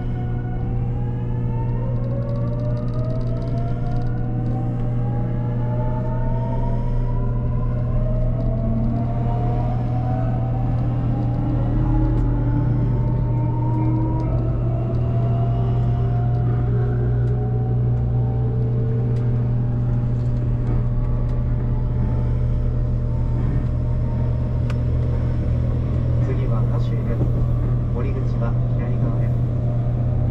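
JR Kyushu 813 series electric train accelerating away from a station: the traction motors' whine rises steadily in pitch over the first twenty seconds or so, then levels off at running speed, over a steady low hum and running noise heard from inside the car.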